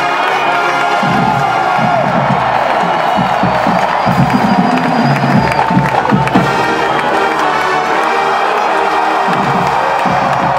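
Brass of a marching band, with trumpets and sousaphones, playing on a stadium field while a crowd cheers and yells over it.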